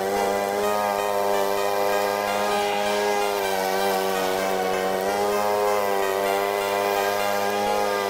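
Honda HRU196 walk-behind mower's single-cylinder four-stroke engine running steadily while cutting long grass, its pitch wavering slightly as the load changes.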